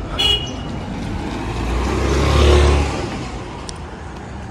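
A motor vehicle passing close by, its sound swelling to a peak a little past the middle and then fading away.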